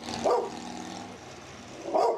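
A dog barking behind a porch gate: two barks, one shortly after the start and one near the end, over steady background hiss.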